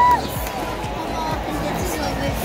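A stadium public-address announcer's drawn-out final syllable of a batter's name, echoing around the ballpark and cutting off just after the start, then a steady murmur from the ballpark crowd.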